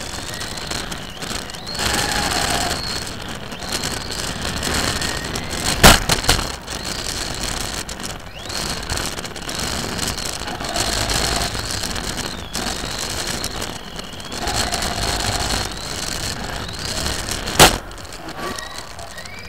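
Onboard sound of an electric RC model car racing across a hard indoor floor: the motor whines up and down in pitch as it speeds up and slows, over steady tyre and chassis rattle. Two sharp knocks, about six seconds in and again near the end, are the loudest sounds.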